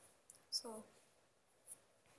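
A single spoken word about half a second in, then near silence with one faint short click.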